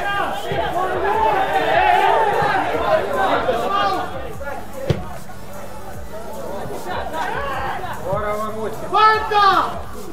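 Footballers calling out to one another on the pitch, with several voices overlapping in the first few seconds and loud shouts near the end. A single sharp knock comes about halfway through.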